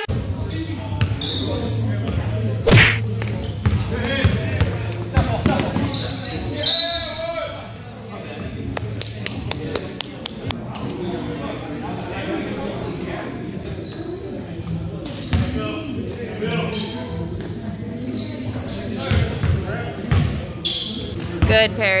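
Basketball bouncing on a gym floor as players move it around, with scattered knocks and players' voices echoing in a large hall.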